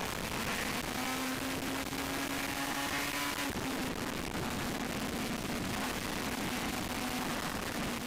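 Suter MMX500's 576 cc V4 two-stroke engine running hard at high revs, heard from an onboard camera under heavy wind rush. Its note holds steady and then drops slightly in pitch about three and a half seconds in.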